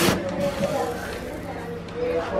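Indistinct talking over a steady low background, with a short rush of noise right at the start.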